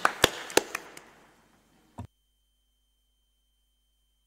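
Scattered audience applause, single claps thinning out and dying away over the first second or so, then one short thump about two seconds in.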